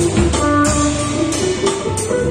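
Live electric guitar, electric bass and drum kit playing instrumental jazz-rock: the guitar carries a melody of held notes that step up and down, over a bass line and steady drum and cymbal strikes.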